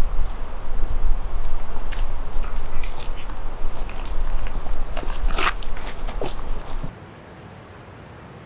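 Footsteps scuffing and clothing and a canvas bag rustling on a dirt and leaf trail, with scattered small knocks and one louder crackle about five seconds in. Under it runs a steady low rumble that stops suddenly near the end, leaving a quieter hiss.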